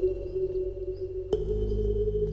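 Sustained bell-like ringing tones, steady and clear. A new tone is struck with a sharp click a little over a second in, taking over from the previous one with a lower hum beneath it.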